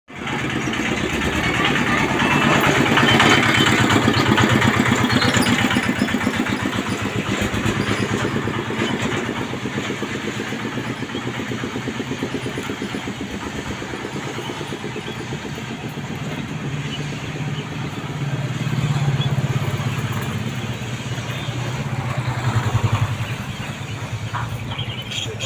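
An engine running steadily with a rapid, even throb, louder a few seconds in and again near the end.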